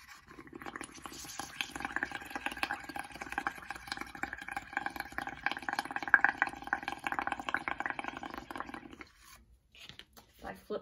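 Blowing through a straw into a bowl of dish soap, water and paint: a continuous bubbling gurgle that builds a mound of large soap bubbles, stopping about a second before the end.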